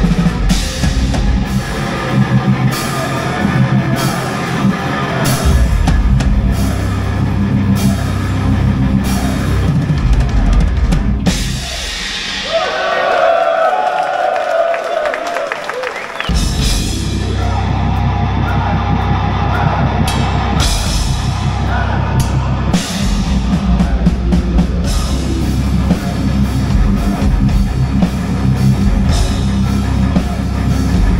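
Heavy metal band playing live, with drums, cymbals and distorted guitars. About twelve seconds in, the drums and low end drop out for about four seconds, leaving a single sustained note. Then the full band comes back in.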